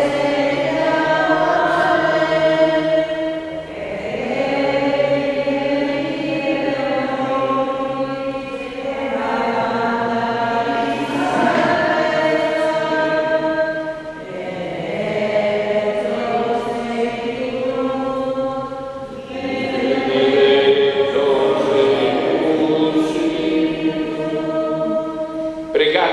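Church choir singing a hymn during the offertory of the Mass. Several voices sing together in long held phrases of about five seconds, each followed by a brief pause for breath.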